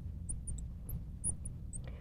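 Marker tip squeaking on a glass writing board as a word is written: a quick run of short, very high squeaks, over a low steady hum.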